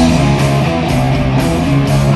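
Live rock band playing, with electric guitars holding chords over bass and drums.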